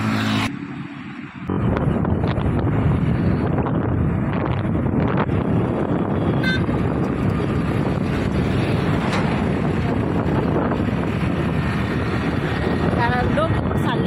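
Wind buffeting the microphone and the steady rush of road and engine noise from a vehicle travelling at speed on a highway, coming in suddenly about a second and a half in.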